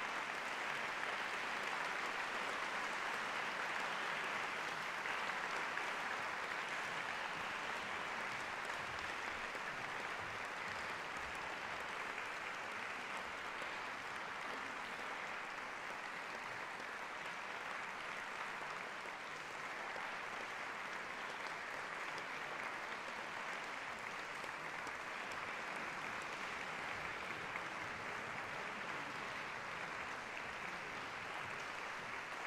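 Audience applauding steadily in a concert hall, a little louder for the first several seconds, then settling.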